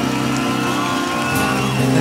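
Acoustic rock band backing music of guitars and strings, playing steady held chords between sung lines, with a sustained high note that falls away near the end.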